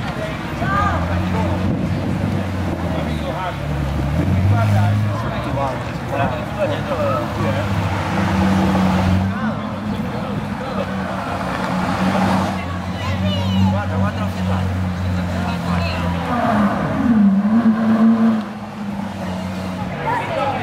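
Ferrari V8 sports car engines running at low revs as the cars creep past at walking pace, with a short rise in revs near the end. Crowd voices are heard over the engines.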